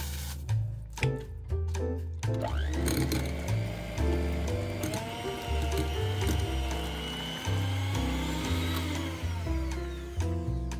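Electric hand mixer starting about two seconds in, its motor rising in pitch and then running steadily as the beaters whip cooled custard in a glass bowl. The motor slows near the end. Background music with a steady bass line plays throughout.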